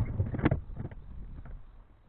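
Skateboard wheels rolling over a plywood ramp, with a sharp clack about half a second in; the rumble then fades away as the board rolls off.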